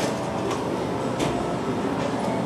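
Steady background noise of an indoor range, with two light clicks about three quarters of a second apart.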